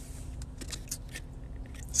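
A person chewing food, with a few short, soft clicks of the mouth about half a second to a second in, over the low steady hum of a car interior.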